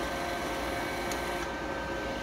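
Wire-feed motor of a Welldo MIG-200 welder whirring faintly for about a second as the wire-check button inches wire through, over the machine's steady fan hum.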